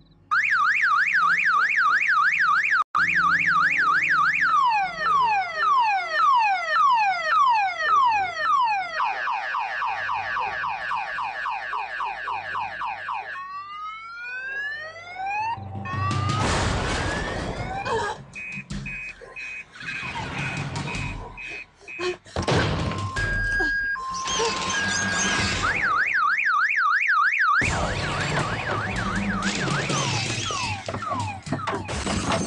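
Electronic alarm siren cycling through its tones: a fast up-and-down warble, then falling sweeps, then rapid beeping, then rising whoops, as a car alarm does. About halfway through, loud harsh noise takes over, with the warble coming back briefly near the end.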